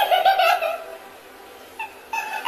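High-pitched laughter: a quick run of short rising-and-falling notes in the first second, then quieter.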